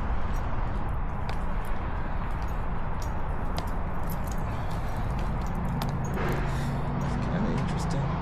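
Outdoor ambience while walking on a concrete path: a steady low rumble with many light ticks of steps on the pavement, and a low steady hum that comes in about five and a half seconds in.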